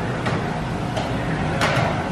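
Auto-shop background noise: a steady low hum and hiss with a few short clicks and knocks, one sharper knock near the end.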